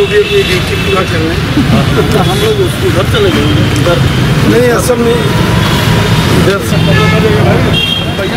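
Voices of people walking in a group, talking over steady road traffic noise.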